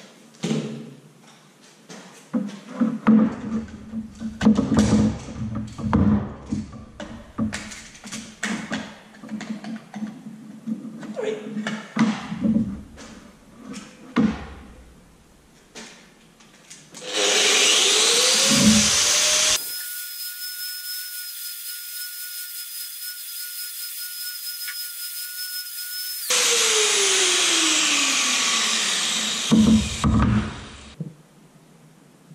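Knocks and clatter of tools being handled, with a motor humming on and off. Then a handheld electric drill spins up with a rising whine, runs steadily for several seconds, and winds down with a falling whine.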